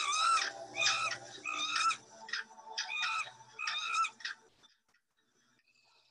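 Frightened infant rhesus monkey giving a series of high-pitched distress screams, about one a second, while clinging to its cloth surrogate mother. The calls stop about four and a half seconds in.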